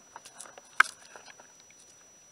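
Scattered small clicks and pops picked up by a camera in the water against a boat hull, with one sharp, much louder click just under a second in.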